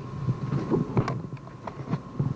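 Handling noise: a scattered run of short knocks and clicks with brief, indistinct low murmuring, over a faint steady high tone.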